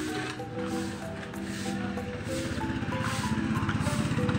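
Background music with held notes. From about halfway through, a motorcycle tricycle's engine comes closer with a rapid, even putter that grows louder toward the end.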